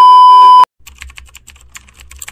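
Loud steady TV test-pattern beep that cuts off after about half a second, followed by a quick run of keyboard typing clicks over a low hum: editing sound effects for a colour-bar glitch and text typing onto the screen.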